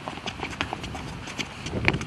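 Sneakers pattering and scuffing on a hard tennis-court surface while a soccer ball is tapped between feet: a quick, uneven run of short footfalls and touches, with a louder scuff just before the end.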